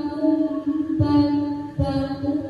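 A young woman reciting the Qur'an into a microphone in melodic tilawah style, holding long ornamented notes, with a short break about a second in and a breath near the end.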